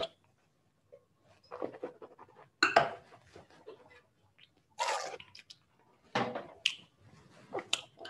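A wine taster sipping wine and slurping it around the mouth: a series of short, wet mouth noises with pauses between them.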